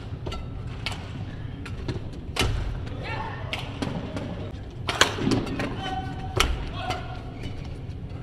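Badminton rackets striking a shuttlecock in a rally, heard as a string of sharp, brief cracks with a few louder hits about two and a half, five and six and a half seconds in, along with footfalls and shoe squeaks on the court mat in a large hall.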